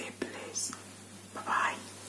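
A woman whispering a few soft words, with breaths between them, over a faint steady low hum.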